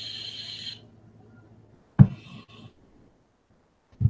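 A steady hiss over a low hum that cuts off within the first second, then a single sharp click about two seconds in, followed by a few faint ticks.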